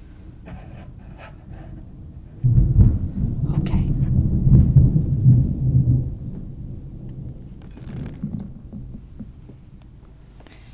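Loud, muffled rumbling of a cup being handled right up against the microphone. It starts about two and a half seconds in and lasts about three and a half seconds, with a light knock partway through, then gives way to faint handling sounds.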